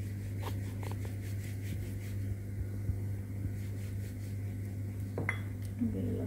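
Wooden rolling pin rolling out paratha dough on a round stone board, with light repeated knocks and clatters as it moves, then a sharper clink about five seconds in. A steady low hum runs underneath.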